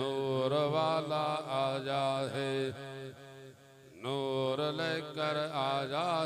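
A man chanting a devotional naat in long, wavering, drawn-out phrases. He pauses for about a second midway, then resumes.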